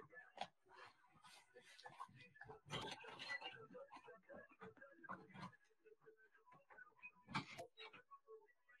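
Near silence: faint scattered rustles and clicks of handling, with one sharper knock near the end.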